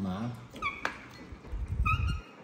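A baby monkey giving two short, high squeaks, one just after the start and one near the end, with sharp clinks of a fork and chopsticks against china bowls in between. A low bump sounds near the end.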